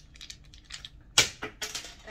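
A handful of small novelty fridge magnets clattering and knocking together as they are handled and slip from the hands, with the loudest knock a little over a second in.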